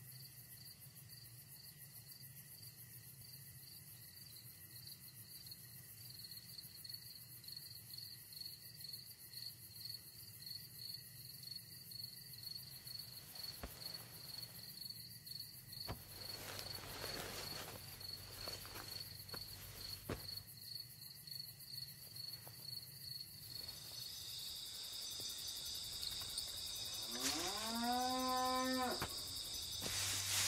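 Crickets chirping steadily, louder in the last few seconds, with a cow mooing once near the end in a call of about two seconds.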